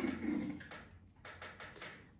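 A few light taps and knocks of a glass jar being handled and set down on a table.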